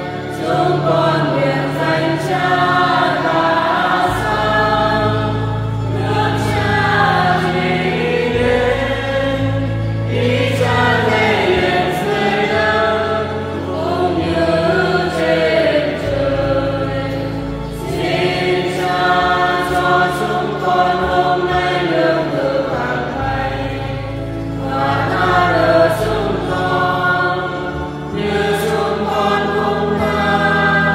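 Church choir singing a hymn, with steady low accompanying chords that change every few seconds.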